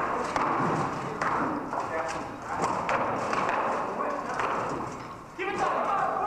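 Rattan weapons and polearms striking shields and armour in a group melee: an irregular clatter of hollow knocks and thuds, with voices shouting over it.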